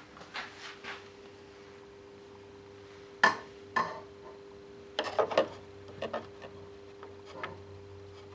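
Scattered clicks and knocks of a small brushless electric motor and metal parts being handled and fitted into a model boat's hull, the sharpest knock about three seconds in and a quick run of taps around five seconds. A faint steady hum runs underneath.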